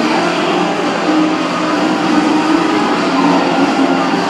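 Loud, steady din of a game arcade, the sounds of many machines blending into one dense wash with a few faint held tones.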